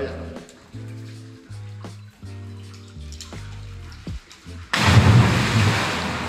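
Background music with slow sustained notes, then, near the end, a sudden loud splash that fades away over a second or so: a person dropping off a rope swing into the cenote's water.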